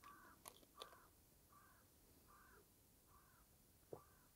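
A crow cawing faintly and repeatedly, about six evenly spaced caws a little under a second apart, over near silence.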